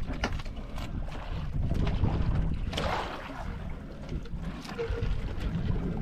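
Wind buffeting the microphone over water lapping against a wooden outrigger boat, with scattered small knocks as a fishing longline is hauled over the side by hand. A brief rushing noise comes about three seconds in.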